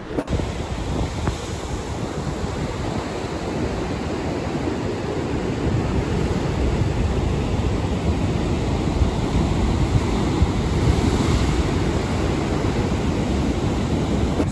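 Heavy sea surf breaking below a cliff: a steady rush of waves and foam, with wind buffeting the microphone.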